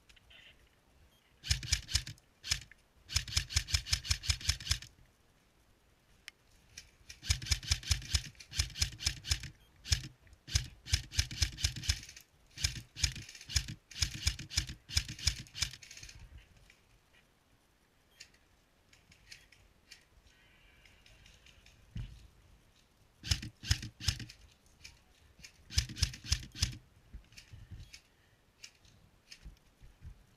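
Airsoft electric rifle (AEG) firing full-auto bursts: rapid, evenly spaced clicks with the gearbox whirring, in about seven bursts of one to four seconds. A long pause falls in the middle, from about 16 to 23 seconds in.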